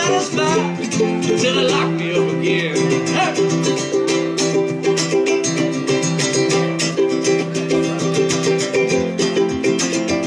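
Ukuleles playing an instrumental break live, with steady strummed chords in a regular rhythm. A wavering, bending high melody line rides over them for the first three seconds or so.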